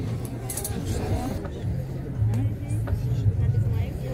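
Indistinct voices talking over a steady low rumble, with a few faint clicks.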